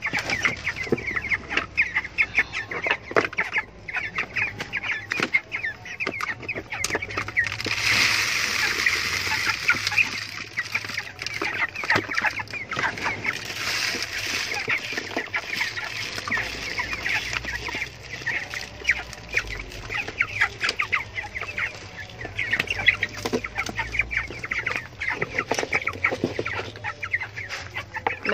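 A flock of young white broiler chickens peeping and clucking continuously as they crowd around a feeder. About a third of the way in and again around the middle, grain feed rustles as it is scooped and poured into the feeder.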